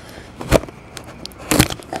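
Plastic wrapping on a trading-card box crackling as fingers pick at its stuck seal: two sharp crackles, one about half a second in and a louder one near the end, with faint small ticks between.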